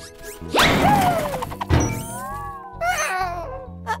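Cartoon sound effects over music: a fast rising whoosh about half a second in, then a falling whistle and a low thud near two seconds. A short wavering animal-like cry follows near the end.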